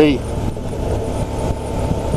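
Suzuki V-Strom DL650's V-twin engine running at road speed through its aftermarket Akrapovic exhaust, heard from the rider's position and mixed with steady wind and road noise on the microphone.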